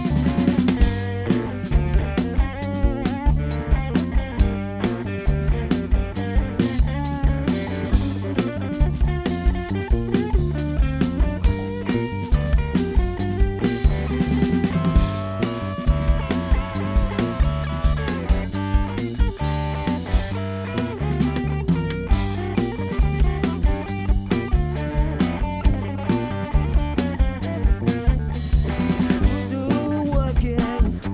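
Live rock trio playing an instrumental passage: drum kit, electric bass and electric guitar, with no singing. About halfway through, the guitar holds long, wavering notes over the steady beat.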